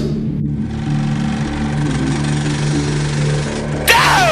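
A steady, low droning sound bed with no speech, then near the end a sudden loud whoosh sweeping down in pitch, an outro sound effect.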